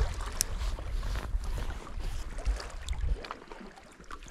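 Wind rumbling on the microphone over sea water washing against rocks, with scattered light ticks; the rumble eases about three seconds in.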